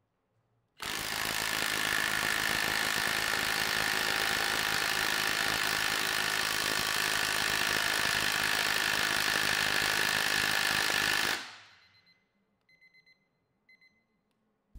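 Milwaukee M18 Gen 2 cordless impact wrench hammering steadily at full power through a weighted Ingersoll Rand power socket against a torque dyno. It starts about a second in, runs for about ten seconds, then trails off and stops.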